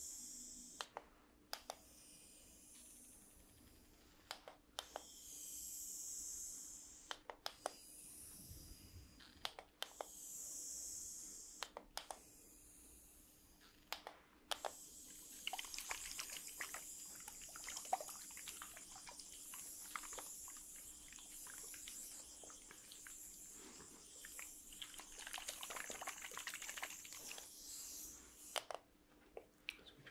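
Small plastic mist spray bottles being pumped close up: in the first half, a few separate sprays, each a soft hiss lasting a second or two, with clicks between them. From about halfway, two bottles are worked at once, giving a run of quick clicking pumps and hiss lasting about fourteen seconds.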